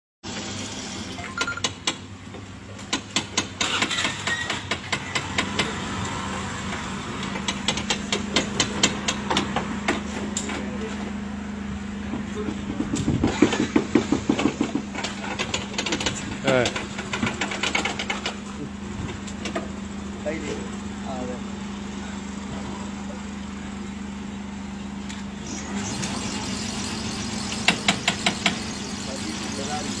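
Voices talking over a steady low machine hum, broken by repeated runs of quick clicks or rattles, loudest around the middle and again near the end.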